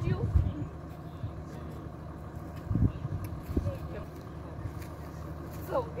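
A vehicle engine idling steadily, a low hum, with a few short low thumps about half a second, three and three and a half seconds in.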